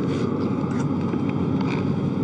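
Steady hum and rush of the space station's cabin ventilation and equipment fans, with a few faint light taps as a body brushes against the sleep-station walls.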